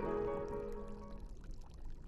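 The last held chord of the film score dies away during the first second, over a faint crackling trickle that goes on and fades out.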